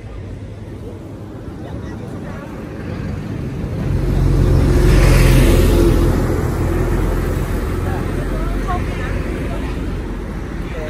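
A heavy truck passing close by on the road, its engine and tyre noise swelling to a peak about five seconds in, then slowly fading.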